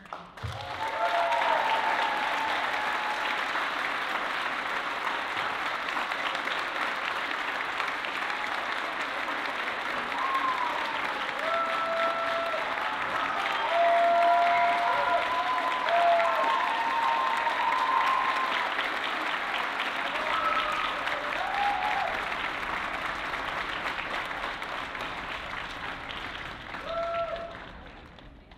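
Concert audience applauding, with scattered cheers and whoops over the clapping. The applause breaks out suddenly, holds steady, peaks in the middle and fades out near the end.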